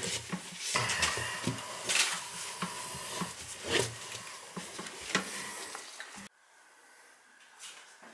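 Small clicks, taps and rubbing scrapes of a gloved hand handling a chrome toilet supply stop valve and its metal riser while checking the joints for leaks, over a faint steady hiss. The sounds stop abruptly about six seconds in.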